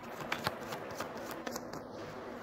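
Tarot cards being shuffled by hand: a run of quick, soft clicks and rustles of card stock.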